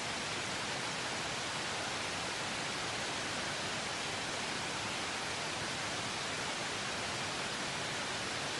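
Steady, even hiss of analogue television static (the 'snow' noise of an untuned TV).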